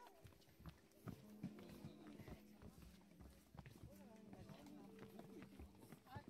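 Faint footsteps of several people on a wooden boardwalk and steps, with quiet talking among them.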